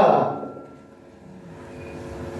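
The end of a man's amplified spoken word dying away with room echo, followed by a pause of faint steady room noise with a low hum.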